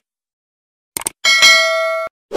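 Subscribe-animation sound effects: a quick double click about a second in, then a bright bell ding whose ring holds steady and cuts off suddenly near the end.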